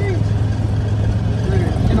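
Engine of a Honda 700 cc side-by-side utility vehicle running steadily while driving, a constant low drone.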